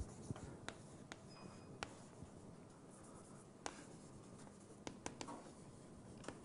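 Faint writing on a board: a scattered series of light, brief ticks and taps as symbols are written.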